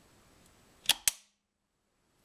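IEK arc fault detection device tripping with two sharp clicks in quick succession, about a second in, as its switch mechanism snaps off in response to a simulated arc fault from a test plug.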